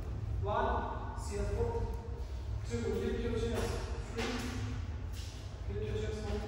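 Speech only: a voice talking in short phrases over a steady low hum.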